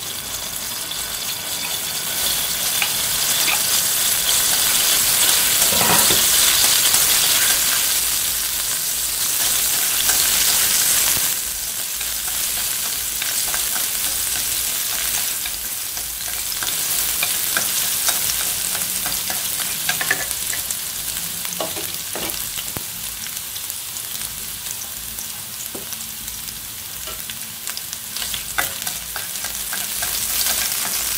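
Sliced shallots and garlic sizzling in hot oil in a metal wok while being stirred with wooden chopsticks. The sizzle swells over the first ten seconds or so, drops suddenly, then settles to a steadier sizzle with occasional light clicks against the pan.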